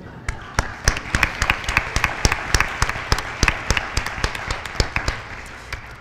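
Audience applause: many hands clapping, starting just after the speaker's last words and thinning out near the end.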